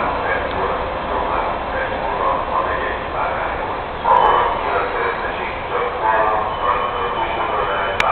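Voices talking, with the low running sound of a Siemens Taurus electric locomotive pulling out beneath them.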